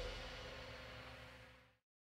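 The faint tail of a live rock band's final chord fading out, a soft held note dying away and then cutting to silence near the end.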